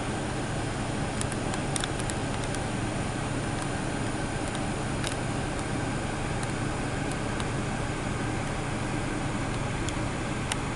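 Steady low hum and hiss with a few faint clicks, a cluster of them about a second or two in and one about five seconds in.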